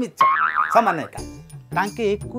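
A comic 'boing' sound effect, its pitch wobbling up and down for about a second, then background music comes in.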